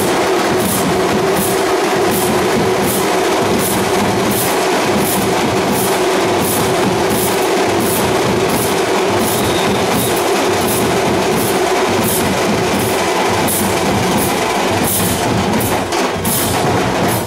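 Dhol-tasha drumming: a loud, dense, continuous clatter of drums with sharp high clashes on a steady beat, about three every two seconds.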